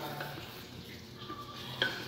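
Faint rubbing of a drinking glass being rolled over soft bread dough on a countertop, with one short knock near the end.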